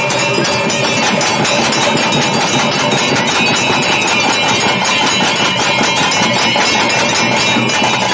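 Ritual drums and bells played without a break: a dense, rapid beat with bells ringing steadily over it.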